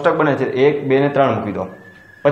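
A man speaking for about a second and a half, then a faint steady high tone near the end.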